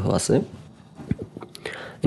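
A man speaking Bengali finishes a word, then pauses; the pause holds only faint room tone and a few small clicks.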